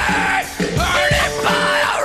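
Live industrial metal band playing loudly, with a male singer yelling the vocals into a handheld microphone over distorted guitars and drums.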